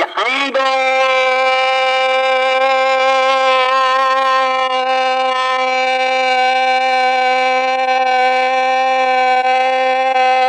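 A man's voice holding one long sung note at a steady pitch, sliding up into it at the start.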